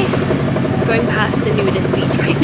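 Tour boat's engine running steadily, with voices talking over it.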